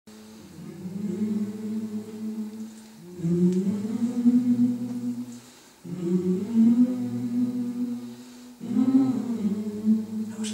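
Wordless humming in four long, low, sustained phrases, each a few seconds long, with short breaks between them.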